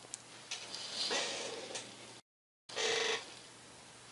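Faint handling noise from a digital multimeter's plastic rear panel and case: two light clicks, then soft scraping and rustling, broken midway by a moment of dead silence.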